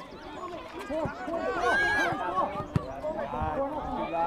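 Several voices calling and shouting over one another during a youth football match, some of them high-pitched. One sharp thump stands out near three seconds in.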